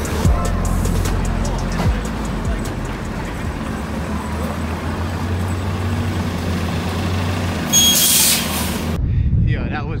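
City street traffic: a steady low hum of idling and passing vehicles, with a short, loud hiss of air about eight seconds in. About a second before the end the sound cuts abruptly to a quieter rushing track.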